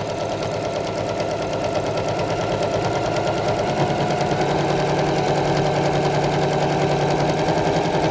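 Electric sewing machine running steadily, sewing a straight-stitch seam through several layers of stiff fabric, its needle going up and down in a fast, even rhythm.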